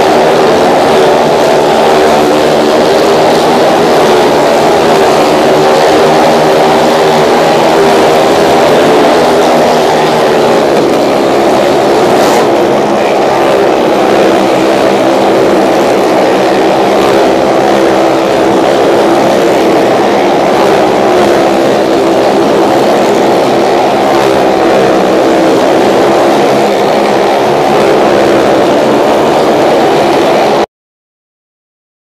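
Motorcycle engines held at steady high revs as the bikes circle the vertical wooden wall of a Well of Death, a loud, continuous, layered engine drone with no let-up.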